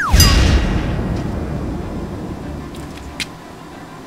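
A burst of flame going up with a boom: a short falling whistle, then a sudden whoosh with deep rumble that fades away over about two seconds. A few faint clicks follow.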